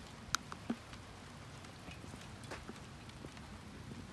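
Light rain falling, a soft steady patter with a few sharp drop ticks in the first second and one midway.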